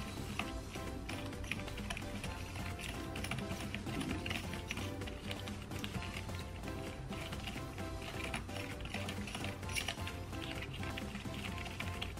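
Small plastic spoon clicking and scraping against the plastic well of a candy-kit tray while stirring a powdered mix into water, in quick irregular taps. Background music plays underneath.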